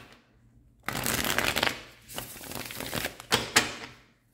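A deck of tarot cards being shuffled by hand: a dense rush of card rustling starts about a second in, followed by a second, softer stretch of shuffling with a couple of sharp card snaps near the end.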